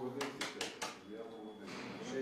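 Paper banknotes, a stack of US dollar bills, being flicked through by hand: four quick crisp rustles within the first second, with a voice underneath.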